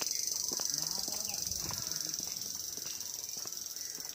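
A steady, high-pitched drone of insects in the trees, with faint distant voices beneath it.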